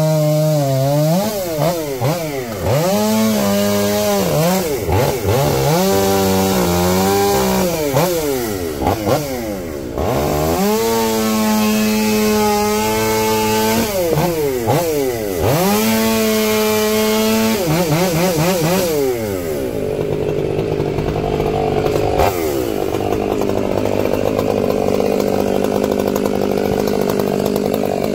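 Gas chainsaw bucking a log: the engine revs up to full speed and sags in pitch as the chain bites into the wood, over several cuts in a row. For the last third the saw keeps running with a steadier, rougher sound.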